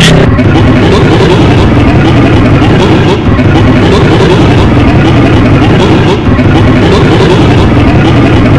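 Loud, heavily processed and distorted audio in which voices are smeared together into a dense, continuous din, with only two brief dips.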